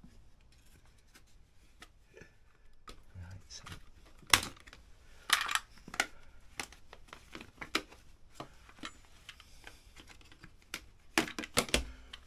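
Scattered clicks, crackles and knocks of a thin black plastic takeaway container being handled and worked, with hand tools knocking on the floor mat. There is a sharp snap about four seconds in, a short crackling scrape a second later, and a quick run of clicks near the end.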